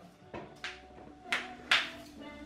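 A broom sweeping a wooden floor: about four short swishing strokes, the two strongest in the second half, gathering up dust and debris.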